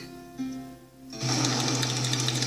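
A soft held music chord, then about a second in a loud distorted buzz with a steady low hum cuts in suddenly and holds: a blown-out meme sound effect.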